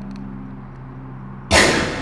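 A steady low hum, then a sudden loud bang about one and a half seconds in that dies away within half a second.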